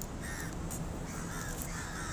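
Crows cawing, a few short harsh calls over a steady low rumble of city traffic.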